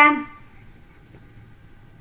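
A woman's voice finishing a word with a falling pitch, then quiet room tone for the rest.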